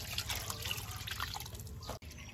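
Water splashing and sloshing in irregular bursts as a hand swishes chopped greens around in a plastic basin of water.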